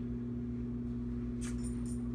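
A steady low hum throughout. About one and a half seconds in, a dog's collar and leash hardware jingle briefly as the dog moves.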